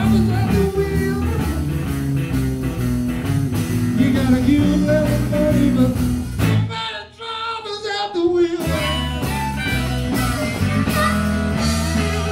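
Live blues band playing: electric guitar, bass, drums and harmonica. About six and a half seconds in, the band drops out for roughly two seconds, leaving only a lead line, then comes back in.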